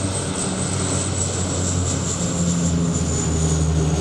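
A Canadair CL-415 water bomber flying low overhead: its turboprop engines and propellers give a steady low drone under a high turbine whine that falls slightly in pitch as it passes.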